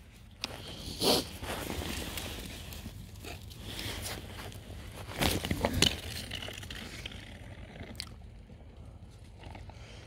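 Footsteps and rustling, scraping handling noise, with a few louder scuffs about a second in and again around five seconds in.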